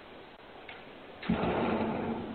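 A front door closing with a sudden thump just over a second in, heard through a Ring video doorbell's microphone.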